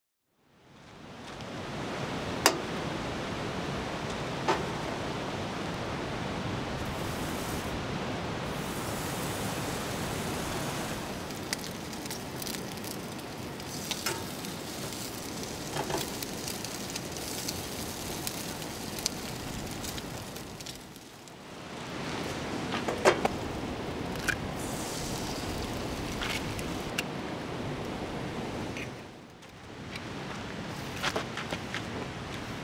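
Bacon sizzling in a frying pan on a camp stove: a steady hiss with scattered pops and the clicks of metal tongs against the pan. It fades in about a second in, drops away briefly about two-thirds of the way through, then comes back.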